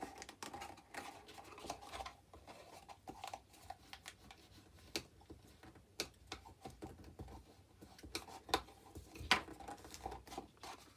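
Cardstock box pieces being handled and pressed into place by hand: soft rustling with scattered light taps and clicks, a few sharper taps in the second half.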